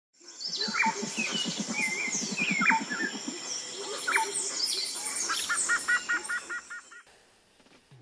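Jungle ambience of several birds calling, with sweeping whistles and quick repeated chirps, over a steady high insect drone. A low, rapid pulsing call sounds in the first few seconds. It all fades out about a second before the end.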